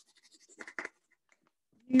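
Side of a pencil rubbed lightly over paper laid on a leaf: a few faint scratchy strokes in the first second, then stopping.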